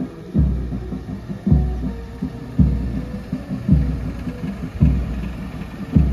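Parade band playing a slow march, with a heavy bass drum stroke about once a second under sustained brass notes.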